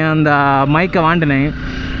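A man talking through most of the clip, pausing near the end. A steady low rumble of motorcycle riding noise runs beneath his voice.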